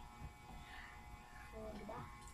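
Faint steady electrical buzz, with a brief faint voice near the end.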